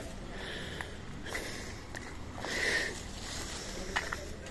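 A person's breathing close to the microphone, loudest in one breathy swell about two and a half seconds in, with faint footsteps on dry ground.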